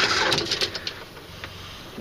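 Electric anchor windlass paying out chain, its motor and the running chain stopping about half a second in with a few sharp clanks.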